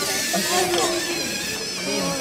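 Indistinct voices of several people talking at once, a background hubbub of chatter.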